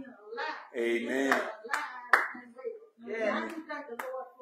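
A few sharp hand claps, the loudest about two seconds in, among raised voices calling out.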